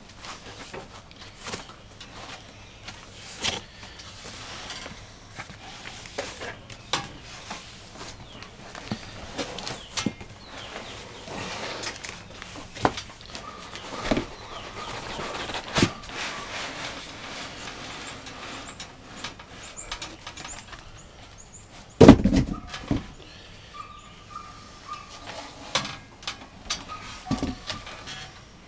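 Cardboard box and packing material rustling, scraping and knocking as a computer tower is pulled out of its box, with scattered clicks throughout and one loud thump about two-thirds of the way through.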